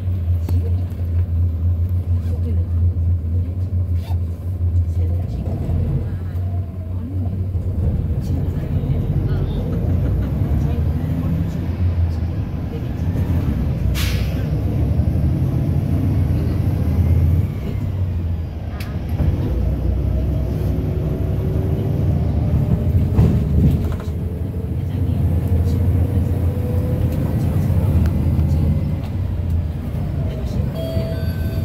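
Cabin sound of a city bus on the move: a steady low engine drone and road rumble throughout. A sharp knock comes about 14 seconds in, and a faint whine rises slowly in pitch over the last ten seconds.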